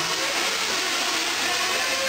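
Several 1/8-scale nitro truggies' small two-stroke glow-fuel engines running at high revs as they race, a steady high buzz with pitches sliding up and down as the drivers work the throttle.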